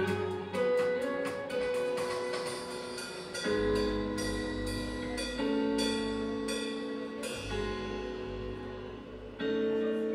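Live downtempo acid-jazz band playing: sustained chords that change every couple of seconds over deep upright double bass notes, with evenly spaced cymbal strokes from a drum kit.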